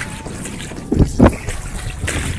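Lagoon water sloshing and splashing close to the camera's microphone as a swimmer moves through it, with two loud, quick thumps about a second in.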